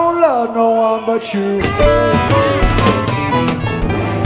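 Live rock band playing loudly. A held note slides down over a sparse backing with the bass and drums out, then the full band with drums comes back in about a second and a half in.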